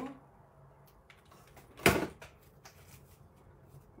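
A hot glue gun set down on a table with one sharp knock about two seconds in, among faint handling sounds as a faux flower is glued in place.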